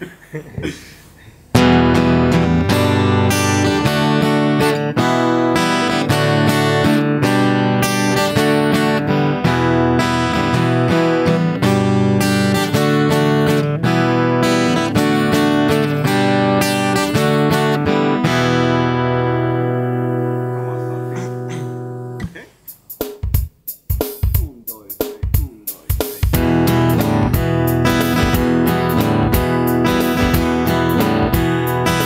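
Epiphone acoustic guitar strummed in a 3/4 pattern of down, down, down, down, up, up, moving through E minor, G and D major chords. About twenty seconds in, a chord is left ringing and dies away, followed by a few short muted clicks, and the strumming then starts again.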